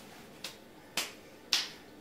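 Three sharp, snap-like clicks about half a second apart, each louder than the last.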